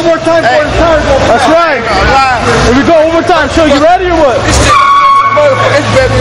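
Men shouting and whooping over a loud low rumble. Near the end a steady high-pitched squeal comes in for about a second.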